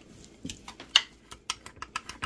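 Sharp clicks and taps against a stainless steel bowl while raw pork is seasoned: one louder click about a second in, then a quicker run of light clicks near the end.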